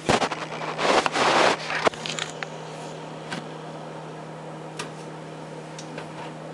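Camera handling noise: rustling and bumping for about the first two seconds as it is carried and set down, then a steady low hum with a few faint clicks.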